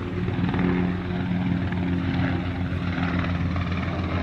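Naval helicopter flying overhead: a steady, low engine and rotor drone.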